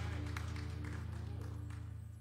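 A band's held chord ringing out and slowly fading, low sustained notes dying away.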